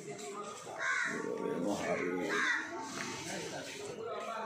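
A bird calling loudly twice, about a second and a half apart, over murmuring voices.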